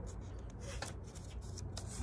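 Page of a hardcover picture book being turned by hand: a few short papery rustles and flicks, clustered about half a second in and again near the end.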